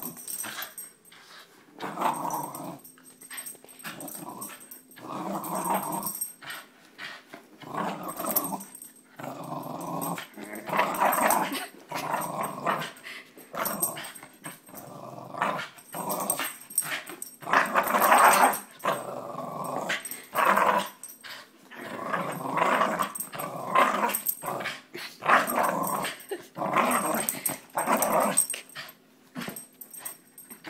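A young Pit-Heeler mix dog growling during a playful game of tug-of-war, in short growls about a second long, one after another with brief pauses.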